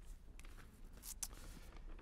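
Faint rustling of sheets of paper being picked up and handled, a few short soft rustles over quiet room tone.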